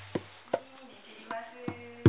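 Hand drum (djembe-style goblet drum) played slowly: the low ring of a deep bass stroke fades away through the first part, then four light, sharp taps, with the next deep stroke landing right at the end.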